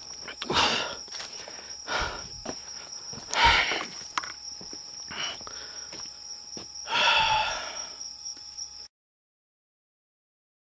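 Night insects trilling at a steady high pitch, with a few short rustles close by. The sound cuts out abruptly near the end.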